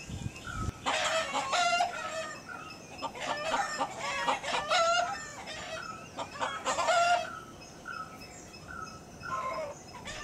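Rooster crowing three times, each crow long and loud, over a small bird repeating a short high note again and again.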